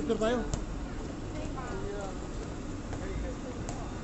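A voice speaks in the first half-second. After that come faint background voices over a low, steady rumble.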